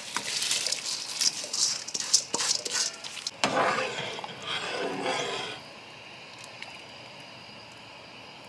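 Soaked raw rice being tipped and scraped from a metal bowl into a pot of boiling water, splashing for about three seconds.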